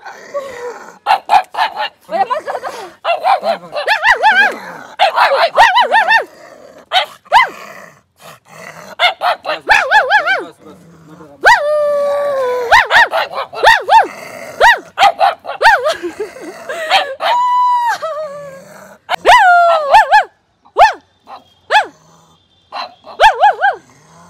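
Pug barking and yapping over and over in short, sharp bursts, with a few longer drawn-out calls in the middle: an agitated small dog warning off a passer-by.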